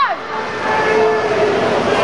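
Swim-meet spectators and teammates shouting and cheering. One long held yell falls away right at the start, and then many voices yell over one another.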